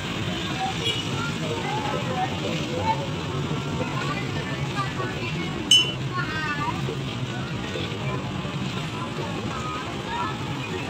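Crowd chatter and voices of people walking in a street parade, with music underneath. A short, sharp, loud sound stands out about six seconds in.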